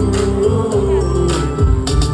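Live amplified music: a backing track with bass and a steady beat, and a voice through the microphone singing one long held note over it.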